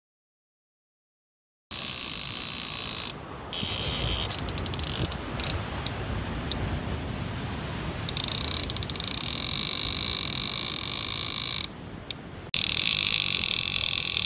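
Drag of a big conventional fishing reel buzzing as a hooked fish pulls line off, starting about two seconds in and easing off briefly twice.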